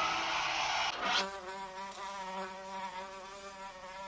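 TV static hissing for about a second, then a fly buzzing steadily, slowly growing fainter.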